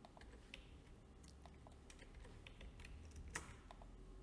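Near silence with faint, scattered clicks of a computer keyboard and mouse, and one louder click about three seconds in.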